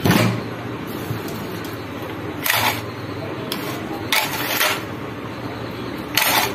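Recoil starter of a Kirloskar power weeder being worked by hand: the starter rope is pulled out and the spring winds it back, the pulley spinning in the housing. There are short bursts of this at the start, about two and a half seconds in and about four seconds in, over a steady low hum.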